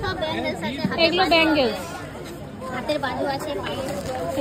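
People talking, no clear words: background chatter.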